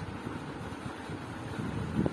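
Steady low background rumble, with no voice.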